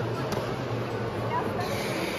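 Indoor ice rink ambience: a steady low hum under an even background noise, with faint distant voices.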